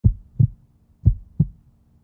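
Heartbeat sound effect: deep lub-dub thumps in pairs, a pair about once a second.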